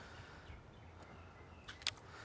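Faint outdoor background noise, with one brief sharp click near the end.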